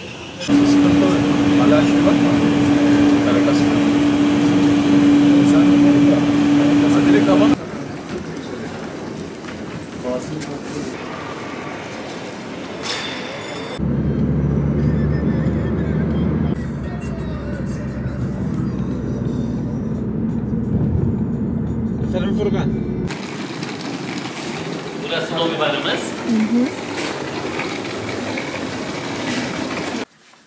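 Cut-together background sounds: a steady hum over voices at first, then the low rumble of a car ride heard from inside the cabin, with voices.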